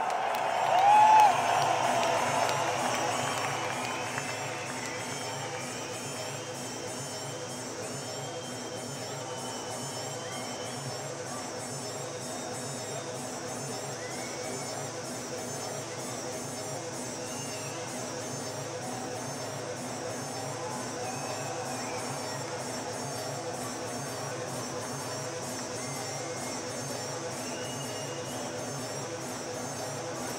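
Arena crowd cheering and whistling at the end of a song, dying down over the first few seconds. Then steady, low, evenly pulsing ambient music plays, with the odd whistle from the crowd.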